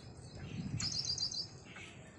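A bird calls a quick run of high chirps, about half a second long, a little under a second in, over a low steady rumble.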